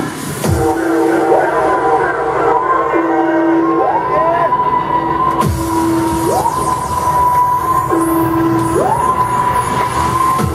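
Live techno set in a breakdown: the kick thins out about half a second in, and a siren-like synth tone slides from a low held note up to a high held note and back, the rise repeating about every two and a half seconds.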